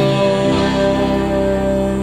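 Instrumental rock passage: sustained guitar chords ringing over bass, moving to a new chord about half a second in.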